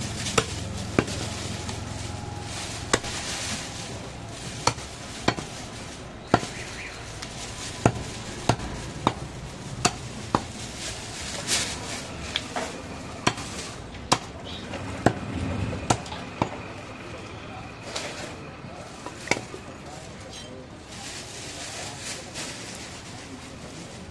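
Butcher's cleaver chopping goat meat and bone on a wooden log block: sharp, irregular strikes about once a second, thinning out near the end, over background noise.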